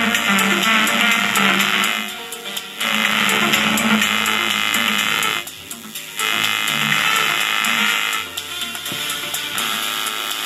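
Music from a phone playing through a homemade 4440-IC stereo amplifier board into two small loudspeakers, as a test that the board works. Three times its higher notes fade out and come back while a control knob on the board is turned by hand.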